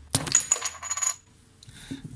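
Pressed-steel end cap of a Mabuchi 12 V DC motor snapping off under a screwdriver's pry with a sharp crack, then clattering and ringing brightly for about a second as it lands.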